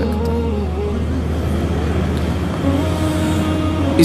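Soft background music with low sustained drone notes that shift to a new pitch about two-thirds of the way through, with no speech over it.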